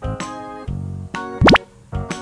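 Cheerful children's background music, and about one and a half seconds in a loud cartoon 'plop' sound effect with a fast upward sweep in pitch, marking the slime dropping out of the cup.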